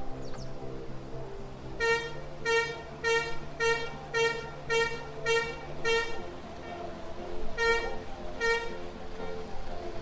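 A horn tooting in a quick run of eight short, even blasts about half a second apart, then two more near the end, over a steady low background hum.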